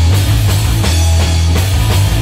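Punk rock band playing live: electric guitar and bass over a steady drum beat, loud and dense.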